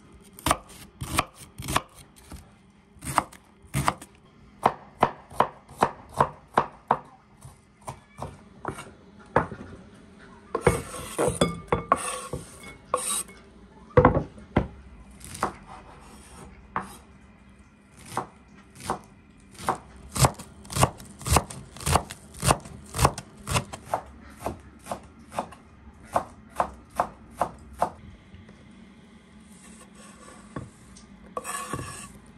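Chef's knife chopping red onion on a wooden cutting board: a steady run of sharp knocks of the blade on the board, a few a second. Near the middle the knocking breaks for a few seconds of scraping noise and one louder knock, then the chopping resumes.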